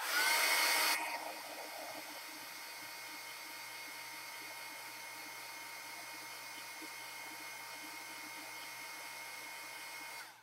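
A handheld dryer blowing air over wet acrylic paint to speed its drying, as a steady whooshing hum with a faint motor whine. It is loudest for about the first second, then settles and runs evenly until it is switched off.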